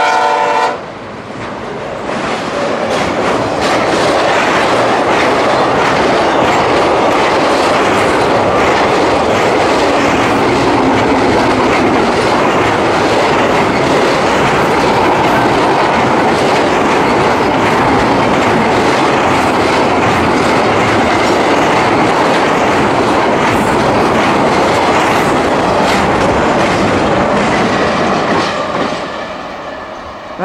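A freight locomotive's horn chord cuts off about a second in. A double-stack intermodal freight train then rolls steadily past, its wheels clacking over the rail joints, until the sound fades near the end as the last car goes by.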